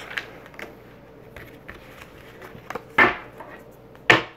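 Tarot cards being handled on a table: faint taps and sliding as cards are moved and gathered, with one louder slap of a card about three seconds in.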